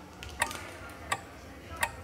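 Three sharp, evenly spaced clicks about 0.7 s apart, each with a brief woody ring, like a metronome count-in ahead of the backing track.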